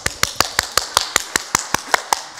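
One person clapping hands in a steady run, about five claps a second.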